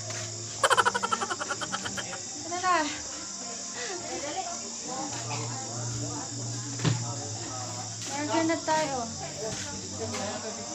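Crickets chirping in a steady high-pitched drone, with a short, rapid, rattling trill about half a second in and voices calling out now and then.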